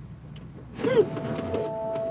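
A woman's sob, a short cry that rises and falls in pitch, just under a second in. Soft music with long held notes comes in right after it.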